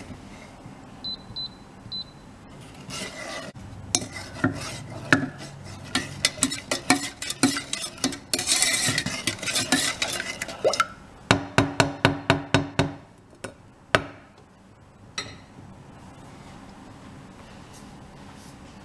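Wooden spoon stirring sugar syrup in a stainless steel saucepan, scraping and knocking against the pan. About 11 seconds in comes a fast run of about a dozen knocks, then two single knocks, and the stirring stops, leaving only a faint steady hum.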